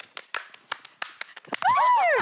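A quick run of hand claps, about three or four a second, followed near the end by a voice calling out.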